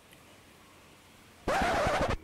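Faint background hiss, then about one and a half seconds in a loud burst of rushing noise that lasts well under a second.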